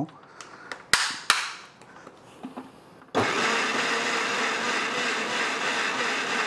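Electric mixer-grinder with a stainless-steel jar blending mango ice cream mixture. It starts about three seconds in and then runs steadily with a wavering hum. A couple of sharp clicks come earlier, about a second in.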